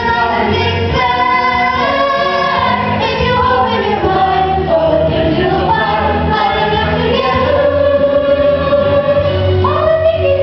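A children's chorus singing a musical-theatre song together in unison over instrumental accompaniment. The singing and accompaniment run on without a break.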